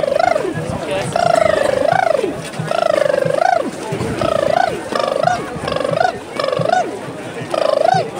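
A person's voice hooting drawn-out calls over and over, about one a second, each bending up in pitch at its end, over the noise of a crowd.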